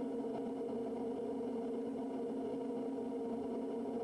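Steady drone of the Quest Kodiak 100's single Pratt & Whitney PT6A turboprop and propeller at cruise power, heard as an even hum of several steady tones.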